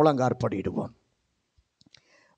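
A man preaching in Tamil for about the first second, then a pause of near silence broken by a few faint clicks near the end.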